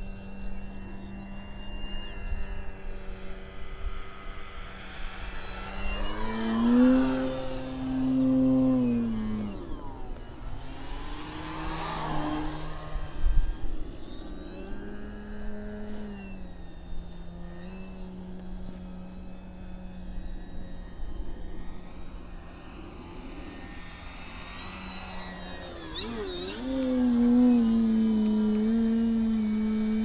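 Electric RC plane in flight, its brushless motor and 15x8 inch wooden propeller making a steady pitched hum with a faint high whine. The pitch and loudness rise briefly about six seconds in and again near the end as the throttle is opened. In the middle a close pass brings a rushing sweep with the pitch falling.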